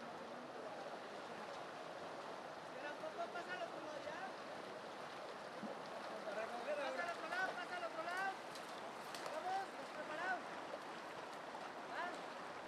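Fast-flowing river water rushing steadily. Voices call out on and off from about three seconds in, loudest in the middle and again near the end.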